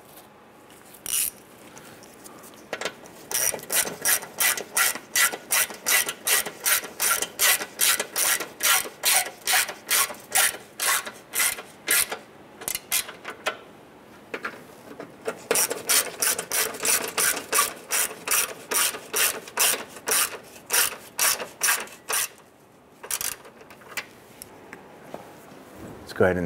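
Hand socket ratchet clicking in quick, even strokes, about three or four clicks a second, as splash-shield screws are snugged down. It runs in two long spells, with a short pause about halfway through.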